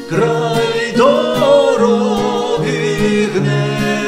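A sung ballad in Ukrainian folk style: voices holding long, wavering notes over a plucked acoustic guitar accompaniment.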